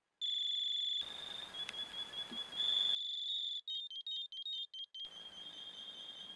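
High-pitched electronic alarm sounding in changing patterns: a steady tone, then a warbling tone, then a fast stutter of chirps from about three to five seconds in, then the warble again. Each change of pattern is abrupt.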